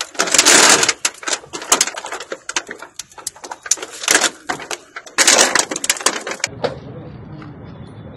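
Rapid sharp clicks and several louder crunching, crackling bursts as a man works at a car's side window, demonstrating how he breaks car glass. Near the end the sound cuts to a low steady rumble of traffic.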